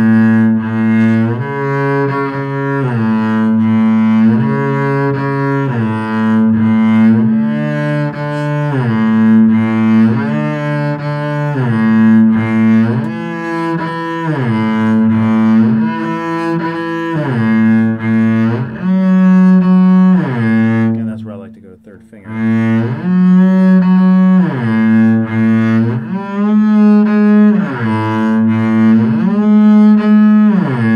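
Bowed double bass playing a shifting exercise over and over: held notes joined by audible slides up to a higher note and back down again, the smear between positions heard on each shift. There is a brief break about two-thirds of the way through.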